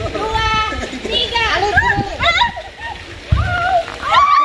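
Excited, high-pitched shouting and squealing from several women calling out over one another during a lively group game, with a low rumble underneath.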